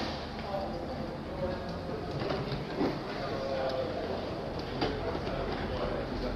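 Railway station booking-hall ambience: a steady background hum with faint chatter of passers-by and a few light knocks.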